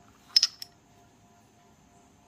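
A quick cluster of three or four sharp clicks about half a second in, as small glossy cowrie shells are handled and knock against each other and the fingers. Afterwards only a faint steady hum.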